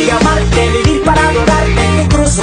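Spanish-language Christian pop song playing, a male voice singing over a full band with a steady beat.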